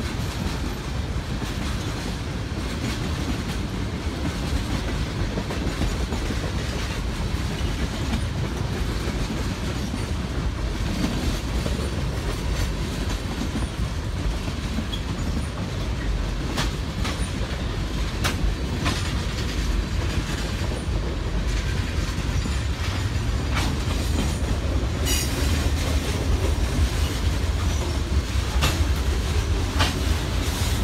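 Freight train cars rolling past close by: a steady low rumble of steel wheels on the rails, with occasional sharp clicks in the second half, growing a little louder near the end.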